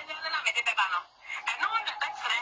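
Speech only: a person talking in quick phrases, with a brief pause about a second in, the voice sounding as if it comes over a telephone.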